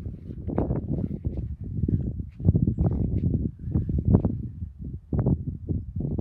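Irregular low rumbling and thumping noise on the microphone, coming in uneven bursts.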